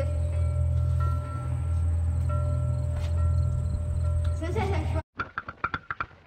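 A steady low rumble with a faint thin whine running through it, cut off abruptly about five seconds in. After a short gap, brass music begins.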